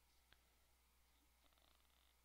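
Near silence: a faint steady low hum, with one faint click about a third of a second in and a brief faint buzz near the end.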